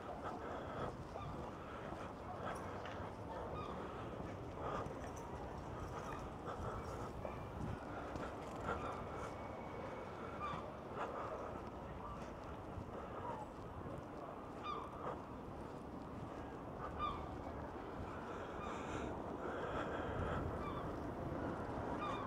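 Faint steady outdoor background with short seagull calls now and then.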